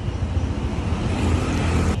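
Scooter engine idling with a steady low pulsing, under passing traffic noise that swells near the end and cuts off suddenly.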